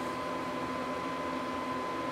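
Steady background room noise: an even hiss with a faint low hum and a thin, steady high whine. It holds level with no distinct events.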